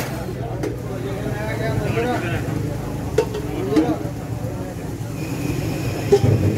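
Busy street-stall ambience: background voices talking over a steady low rumble, with a couple of sharp clicks a little past the middle.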